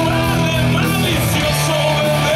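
Live rock band playing: electric guitars, bass and drums, with a harmonica wailing over them.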